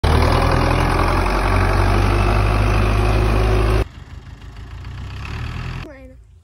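Belarus tractor's diesel engine running steadily and loudly up close. About four seconds in the sound cuts off abruptly, leaving a much quieter low hum.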